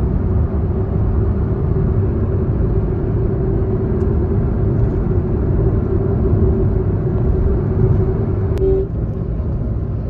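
Steady road and engine noise inside a moving car's cabin at highway speed: a low rumble with a constant drone. A short click comes near the end, after which the noise drops slightly.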